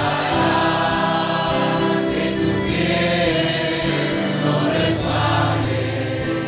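A church congregation singing a hymn together, many voices in sustained, held notes.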